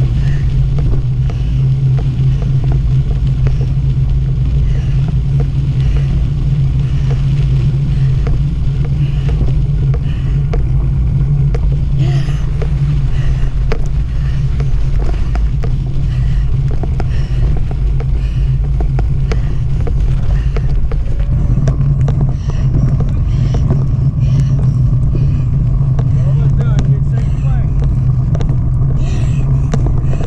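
Steady low rumble of wind buffeting a bike-mounted action camera's microphone, mixed with the knobby mountain bike tyres rolling over dirt trail and grass.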